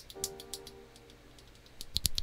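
Rapid light clicking, about eight clicks a second, from spare mechanical keyboard switches being handled and worked between the fingers. The clicking dies away early, and a fast run of clicks starts again near the end.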